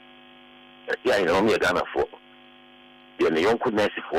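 A voice speaking in two stretches over a steady electrical mains hum, a set of evenly spaced tones that runs under the speech and fills the gaps between.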